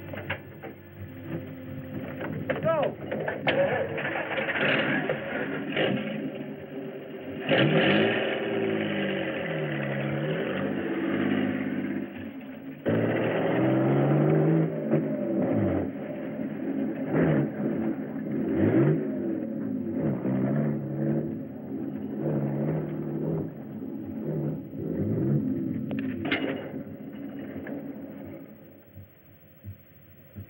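Dune buggy engine running, revving up and down over and over, the pitch rising and falling with each rev; the sound fades near the end.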